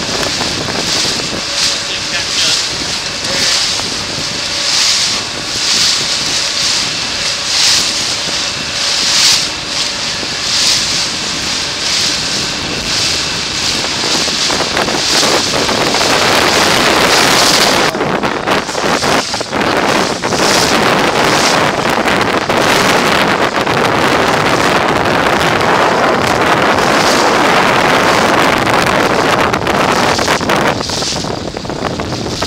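Wind buffeting the microphone over the rush of water from a boat moving through chop, surging about once a second; about eighteen seconds in it turns into a denser, steadier rush.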